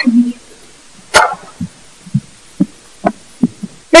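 Footsteps on a stage floor, short dull thuds about two a second, after a single sharp knock about a second in.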